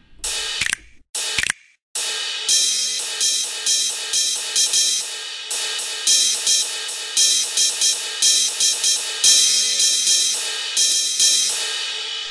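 Cymbal samples in a software drum machine, triggered from the pads. In the first two seconds a couple of hits are cut off abruptly, a pad in the same choke group silencing the cymbal. Then the cymbal is struck repeatedly, several times a second, in a ringing wash.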